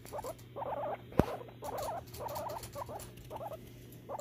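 Guinea pig crying: a string of short, rapid stuttering calls, one after another, with a sharp click about a second in. It is the protest sound of a guinea pig during a tense introduction with another, not the tooth chattering of a fight that is escalating.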